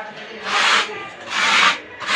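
Three strokes of a rough rubbing sound, a little under a second apart.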